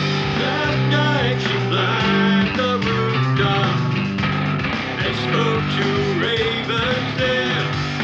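Rock music with guitars, steady bass notes and a lead line whose notes slide up and down.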